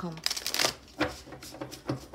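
A tarot deck being shuffled by hand. A short rush of cards sliding past each other comes first, then a run of sharp card snaps and taps about every third to half second.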